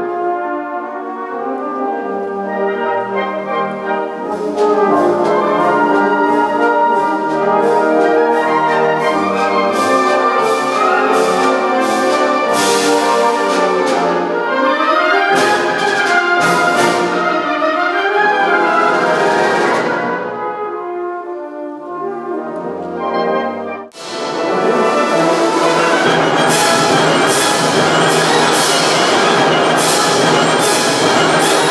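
Large symphonic wind band playing: full brass with tubas and euphoniums, clarinets and saxophones, growing louder a few seconds in. Near the last quarter the music breaks off abruptly and comes back loud with percussion strikes and cymbals over the band.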